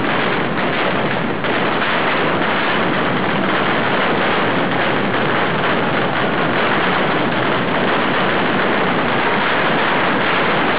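Mascletà firecrackers going off in a dense barrage, the bangs so close together that they merge into one continuous, loud din with no single report standing out.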